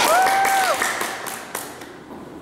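Hand clapping and cheering that die away over the first second and a half, with one short high held 'woo'-like call near the start and a single tap about a second and a half in.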